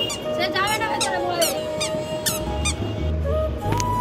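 Short high squeaks repeating irregularly, about two a second, over background music with held tones; a deep bass comes in about two and a half seconds in.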